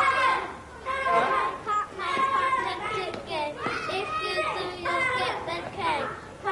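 Children's voices calling and chattering together as they play.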